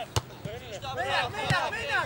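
Two sharp thuds of a football being kicked, about a second and a half apart, amid players' shouts.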